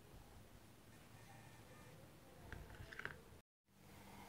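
Near silence: room tone with a few faint handling clicks and rustles about two and a half seconds in, then the sound drops out completely for a moment near the end.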